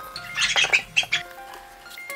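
Soft background music of held notes, with a bird squawking in a quick series of harsh calls about half a second in.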